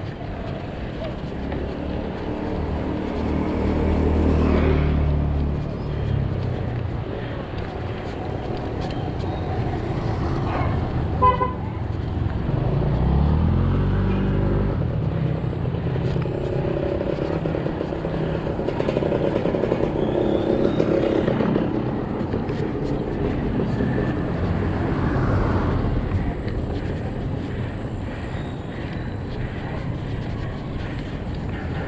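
Steady rushing noise of a bicycle ride on a paved road, with a motor vehicle's engine passing twice, rising in pitch the second time. A single short horn beep sounds about a third of the way through.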